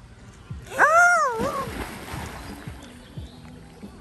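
A loud yell that rises and falls in pitch about a second in, then the splash of a person jumping into a swimming pool.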